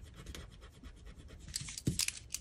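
Faint scratching and rubbing of a pen on a paper planner page as a mis-written entry is rubbed out, with a light tap near the end.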